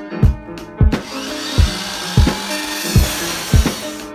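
Background music with a steady drum beat. From about a second in, a metal-cutting chop saw cuts through 3-inch oval stainless steel exhaust tubing as a steady hissing grind for about three seconds.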